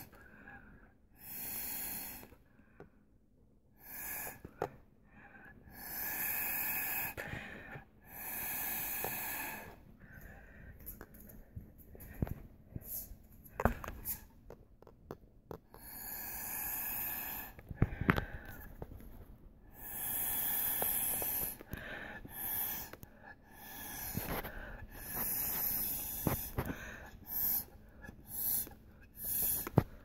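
Repeated puffs of breath blown through a drinking straw, about ten of them, each a second or so long, fanning out wet alcohol ink. A few short knocks fall between the puffs.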